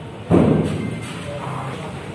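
A single loud thump about a third of a second in, fading out over roughly a second, over background room noise and faint voices.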